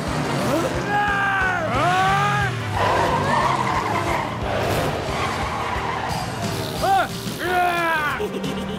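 Cartoon go-kart racing sound effects: karts running and skidding on dirt, with a noisy skid about three seconds in. Wordless, gliding cartoon voice exclamations come near the start and again near the end, over light background music.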